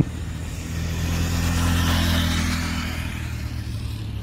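KTM RC 390's single-cylinder engine as the motorcycle leans through a curve and passes by, its steady note swelling to a peak about two seconds in and then fading as it moves away.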